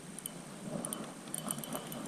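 Spinning reel worked while fighting a hooked fish: faint, irregular light ticks and clicks over a low steady rush.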